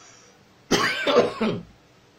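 A man coughing: one harsh burst starting a little under a second in and lasting about a second, from a lingering cough that is straining his voice.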